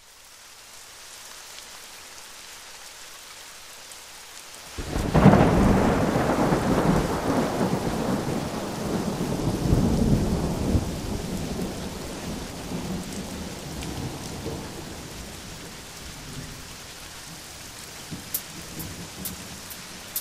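Rain and thunder: steady rain hiss fades in, then a loud roll of thunder about five seconds in rumbles and slowly dies away under the rain, with a few sharp ticks near the end.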